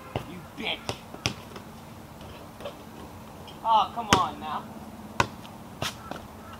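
A basketball bouncing on pavement: a handful of separate sharp thuds at uneven intervals, the loudest a little after four seconds in.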